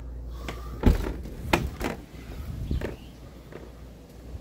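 A sliding glass door and its screen door being pulled open: a series of knocks and rattles from the frames, the loudest about a second in.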